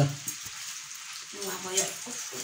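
Chow mein noodles frying in a wok, a steady sizzle.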